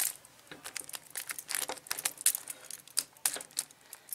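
Key being worked back and forth in a cylindrical padlock's lock, giving irregular small metallic clicks and rattles. The lock has just been dosed with pencil graphite to free a sticking mechanism.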